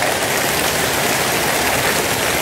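A large congregation applauding steadily.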